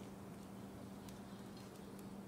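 Quiet background noise with a steady low hum and a few faint ticks.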